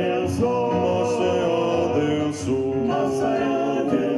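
Male vocal quartet singing into microphones in close harmony, holding long chords that move together.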